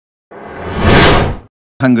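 A whoosh transition sound effect that swells up and cuts off sharply about a second and a half in. A man's voice begins speaking near the end.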